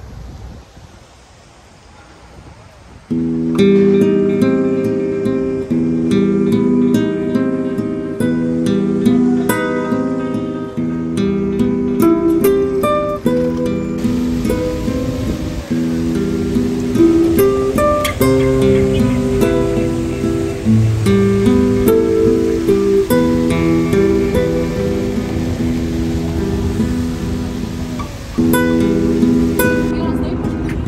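Background music with plucked notes, starting suddenly about three seconds in and continuing steadily; before it, only faint street ambience.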